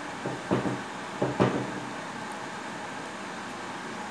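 Orange tabby cat eating from a hand, with a few short clicks and knocks in the first second and a half, then only room noise.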